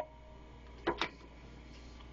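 A quiet pause: faint low room hum, with two short clicks in quick succession about a second in.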